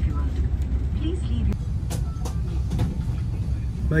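Steady low cabin hum inside an Airbus A350 on the ground during boarding, the air system running, with faint background chatter and a few light clicks.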